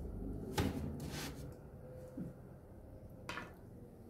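Quiet handling sounds at a fire-heated griddle stove where flatbreads are cooking: a soft knock about half a second in, a brief scraping rustle just after, and another short knock near the end.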